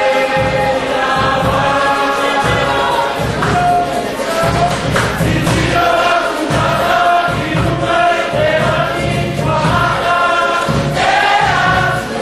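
A group of voices singing a song together in chorus, over a steady low beat.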